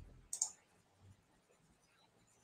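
A brief computer mouse click about a third of a second in, then near silence.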